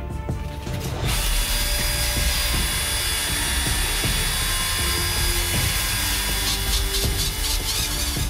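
Cordless drill spinning a ring on a mandrel while sandpaper is pressed against the turning ring, a steady motor whir and abrasive rasp that starts about a second in. Background music plays underneath.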